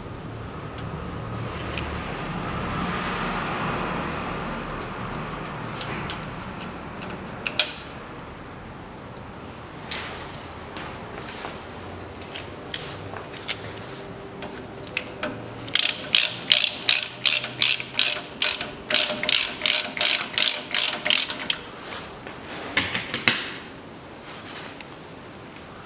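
Hand ratchet wrench clicking in a quick, even run of about three to four clicks a second through the second half, with a few single clicks before it: a sway-bar bushing bracket's bolts being run in. A soft hiss-like rustle comes first.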